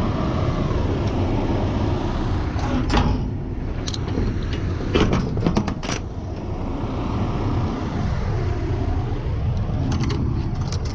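Steady low rumble of an idling truck engine. Sharp metallic clicks and knocks from a semi-trailer's swing door and its lock-bar hardware being handled come through it, a cluster of them about five to six seconds in.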